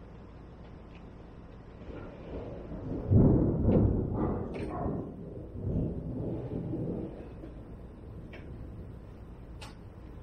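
Thunder rumbling: a low roll that builds about two seconds in, is loudest a little after three seconds and dies away by about seven seconds. A single sharp click comes near the end.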